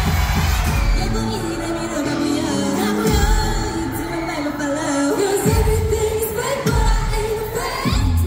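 K-pop girl group singing live into handheld microphones over a loud pop backing track through a concert PA. The heavy bass drops out and comes back in several times.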